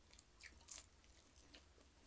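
Faint, crisp crunching and crackling from eating crispy fried fish by hand: a few short clicks, the loudest about three-quarters of a second in.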